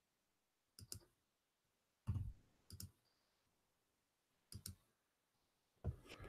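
A handful of faint, short clicks, about six spread over several seconds, from a computer being operated to move to another page. Otherwise near silence.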